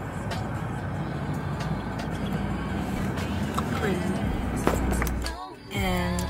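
Steady low rumble inside a car cabin, with faint music underneath. The sound drops out briefly near the end.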